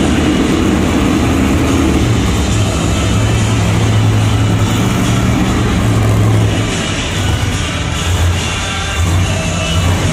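Bigfoot monster truck's engine running loud, strongest for a few seconds before easing off about two-thirds of the way through, with arena music playing.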